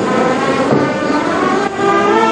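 Brass band music holding sustained chords, moving to a new chord near the end.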